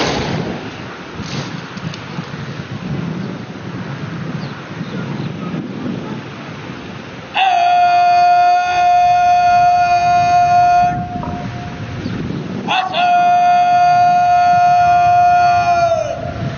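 Outdoor parade-ground noise, then two long, loud calls, each held at one steady pitch for about three and a half seconds, the second ending with a drop in pitch.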